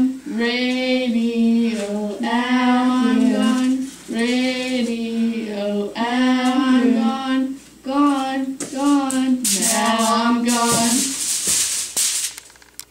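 A female voice singing wordless held "oh" notes, about six phrases of a second or two each with short breaks between, the pitch bending at the ends of the notes. Near the end a hiss rises over the last phrase.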